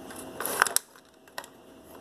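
Light clatter of plastic Lego pieces being handled: a few quick clicks about half a second in, then one sharp click past the middle.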